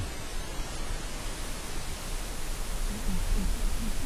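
Steady underwater hiss picked up by a camera under water, with a few faint, short low-pitched blips in the last second.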